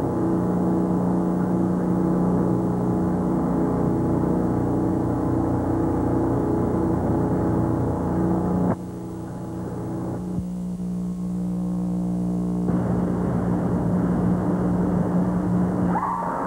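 Steady electrical buzz with a low hum under it, made of several fixed tones, on a worn videotape's soundtrack. It cuts off abruptly a little past halfway, then comes back as a thinner buzz that fills out again a few seconds later.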